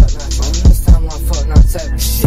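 Hip hop song: rapped vocals over a beat of deep kick drums that drop in pitch, hitting about five times, with fast hi-hats ticking above.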